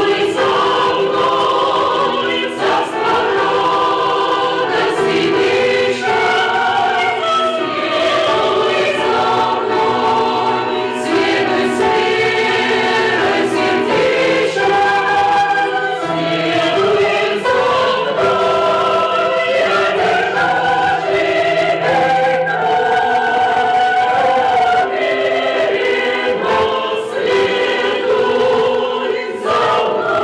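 A group of voices singing together in a church, men and women, holding long sustained notes. It is the soundtrack of a video clip played back in a conference hall.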